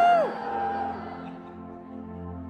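A singer's loud held note slides up into pitch and then drops away sharply about a third of a second in. It is followed by soft, sustained instrumental chords from the band.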